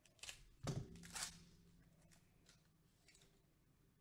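A trading-card pack's wrapper being slit open with a box cutter: three short crinkling rustles in the first second or so, then near silence.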